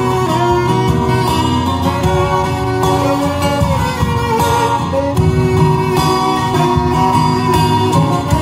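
A saxophone and an acoustic guitar playing an instrumental piece: the saxophone carries the melody in long held notes over the guitar's chords.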